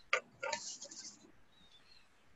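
A sharp click, then a brief rapid run of clicks and rattles that fades out within about a second.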